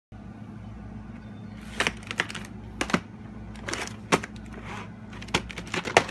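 Sharp plastic clicks and rattles of a VHS cassette and its clamshell case being handled, coming in quick irregular bunches from about two seconds in, over a steady low hum.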